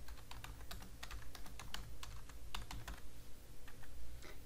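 Computer keyboard keys being typed in a quick, uneven run of about fourteen keystrokes, the length of a short phrase.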